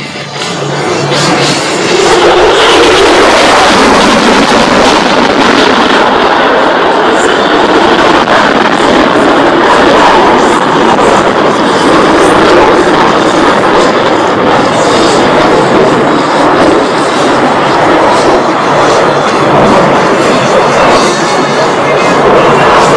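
Jet noise from an F-35A's single turbofan engine during a tight, high-power turn: a loud, steady roar that swells over the first two seconds. Music from loudspeakers plays along with it.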